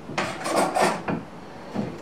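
Hands rummaging inside a soft fabric tool bag, with rustling and scuffing of fabric and tools, busiest in the first second and then quieter.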